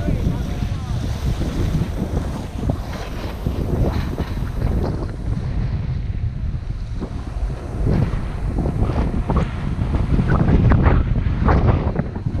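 Wind buffeting the microphone of a camera riding an open chairlift: a steady low rumble that swells louder near the end, with scattered sharper crackles in the second half.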